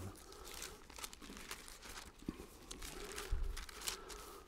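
Paper pages of a Bible rustling and crinkling as they are leafed through, with a faint click past the middle and a soft low bump near the end.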